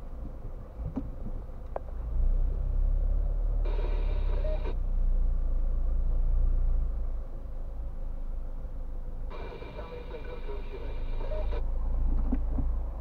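Car engine idling, heard inside the cabin while stopped at a red light: a steady low rumble that grows louder about two seconds in. Twice, about four and about ten seconds in, a short higher sound with several steady tones starts and stops abruptly.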